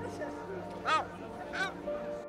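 Yellow-legged gull calling twice, two short arched cries well under a second apart, the first louder.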